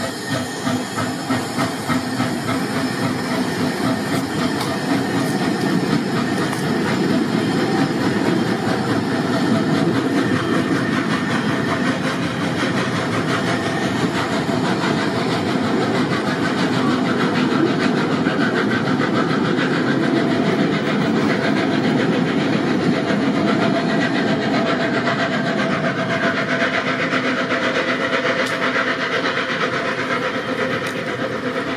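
A steam-hauled narrow-gauge train of the Zillertalbahn passing close by, its carriages rolling and clattering over the rails, with steam hiss from the locomotive ahead. It grows louder over the first few seconds, then holds steady.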